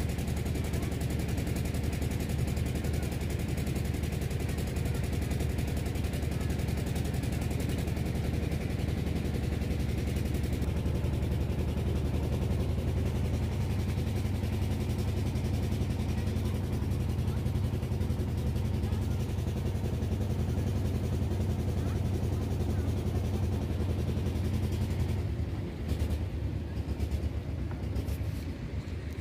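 Engine of a motorized wooden river boat running steadily with a rapid, even putter. A little before the end the sound drops and turns uneven.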